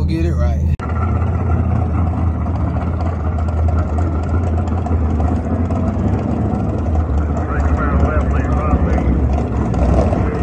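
Chevrolet Camaro's engine idling with a loud, steady low rumble as the car rolls slowly through the burnout box at a drag strip. A voice is heard briefly at the start.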